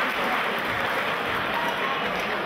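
Crowd applauding, a steady patter of clapping.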